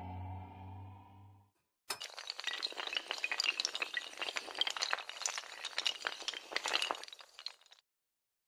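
Sound effect of a long chain of dominoes toppling: a dense, fast clatter of many small clicking impacts that starts about two seconds in and stops just before the end. Before it, a low rumbling tone fades out.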